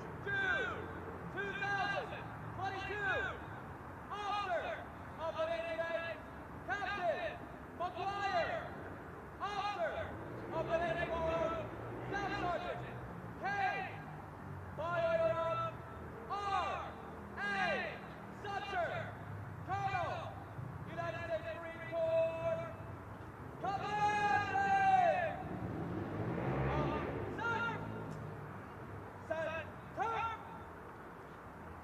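A voice calling out in short, drawn-out shouts, about one a second, the pitch rising and falling on each, with a longer call near the end.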